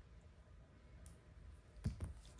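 Mostly quiet, with a faint tick about a second in and a sharper click near the end from the microphone's coiled cable and plugs being handled.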